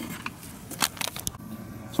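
A few scattered light clicks and taps from a hand handling an A/C vacuum pump and its hoses. The pump's motor is not yet running.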